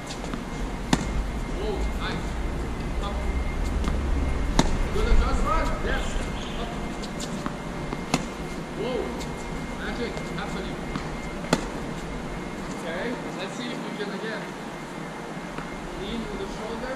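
Tennis balls struck by rackets in a feeding drill: a handful of sharp hits a few seconds apart as the feeder sends balls and the player returns backhand slices. A low rumble runs underneath and drops away near the end.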